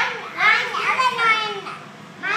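A young child talking in a high voice, the words indistinct, loudest about half a second in and trailing off near the end.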